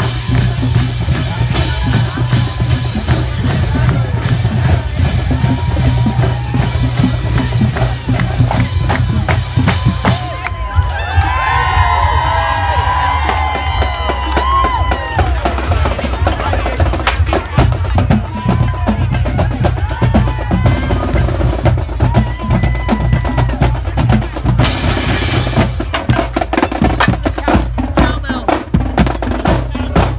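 Marching drumline with bass drums beating a fast, steady cadence. Crowd voices rise over the drumming around the middle.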